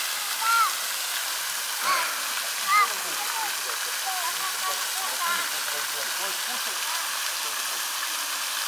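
Park fountain's water jets splashing into the basin: a steady rush of falling water.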